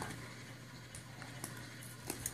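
Faint, small crinkles and ticks of the foil wrapper of a Kinder Surprise chocolate bunny being picked at by fingers, over quiet room tone.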